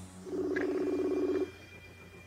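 A phone's ringing tone for an outgoing call: one low, steady two-note buzz lasting about a second, then it stops.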